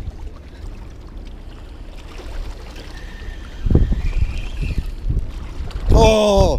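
Wind buffeting the microphone as a low rumble, gusting harder from a little past halfway. A faint thin whistling tone sounds briefly in the middle.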